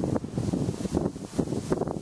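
Wind buffeting the microphone in uneven gusts, a low rumbling noise that rises and falls.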